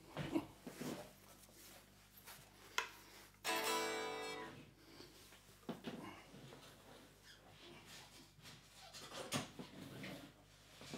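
Guitar handling noise: scattered knocks and bumps as guitars are moved about, with the strings of a guitar ringing out once as a single chord about three and a half seconds in, dying away over about a second.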